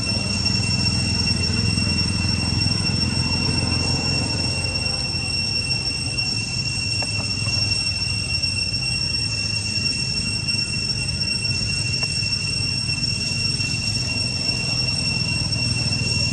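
Steady high-pitched insect drone, one unbroken tone like cicadas in tropical forest, over a low rumble.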